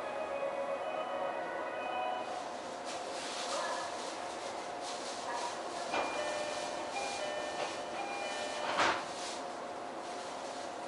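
Sound of an E531 series electric train standing at a station platform: a steady hiss with a run of short steady tones at changing pitches, and a short sharp knock about nine seconds in.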